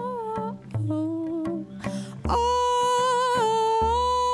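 A woman singing long, held wordless notes over her own cello accompaniment, with low cello notes underneath and a breath taken about two seconds in.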